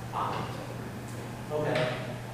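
Two short fragments of voice, one just after the start and a longer one near the end, over a steady low electrical hum.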